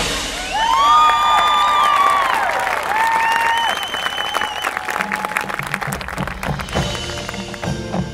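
Audience applause with sliding whistles after the marching band's music breaks off. From about five seconds in, the band's percussion comes back in with a steady beat.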